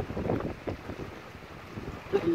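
Wind buffeting the microphone on open water, irregular low rumbles over a faint hiss.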